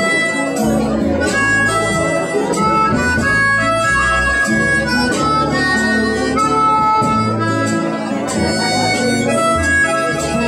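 Harmonica solo during an instrumental break in a live song, playing long held single notes over guitar accompaniment with low bass notes underneath.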